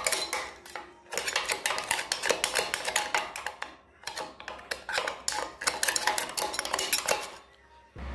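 A hand tool scraping and clicking against the steel flat die and rollers of a small pellet mill, clearing out leftover ground alfalfa with the machine stopped. The strokes are rapid and irregular, with brief lulls about four seconds in and near the end.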